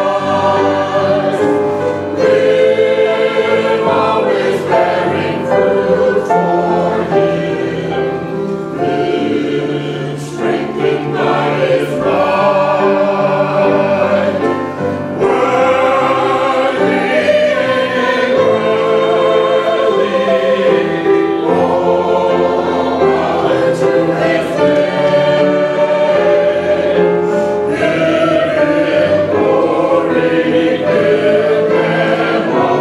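Small church choir of men and women singing together, sustained sung lines that continue with only brief breaths.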